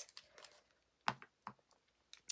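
A few light clicks of pens and pencils being handled and set down on a desk, two of them sharper, about a second in and half a second later.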